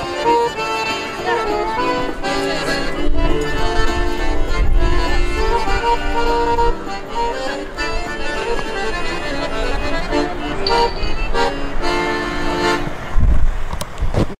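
Piano accordion playing a tune, melody notes moving over held chords, with a low bump near the end.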